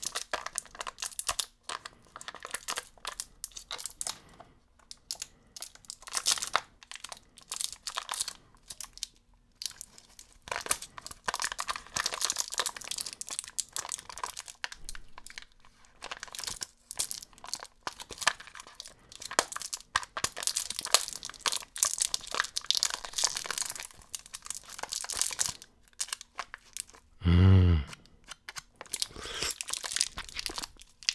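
Thin plastic packaging crinkling and tearing in irregular bursts as fingers pick at and peel the lid seal off a small plastic sherbet-powder tub. Near the end there is one brief, loud, low-pitched buzzing sound.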